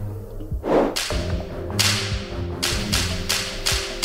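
Soundtrack music with sustained tones, overlaid by swish sound effects. A low whoosh comes just before one second in, then a quick run of about five sharp, whip-like swishes in the second half.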